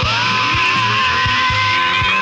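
Rock music: a lead electric guitar holds one long note, bent up at the start and held steady, over a steady bass line and regular drum beats.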